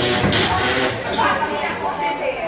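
Voices talking, with a brief burst of noise in the first second.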